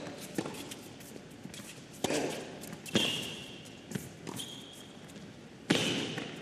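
Tennis rally on an indoor hard court: racquets strike the ball several times, a second or two apart, with the loudest hit near the end, and shoes squeak briefly on the court between shots.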